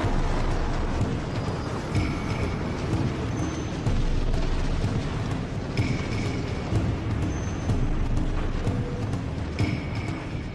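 Wind rushing over a camera microphone during a freefall, a steady low rumble, with background music over it.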